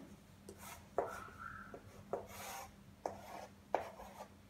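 Chalk on a blackboard: a few sharp taps and short scratchy strokes as lines and a cell symbol are drawn, with a brief squeak of the chalk about a second in.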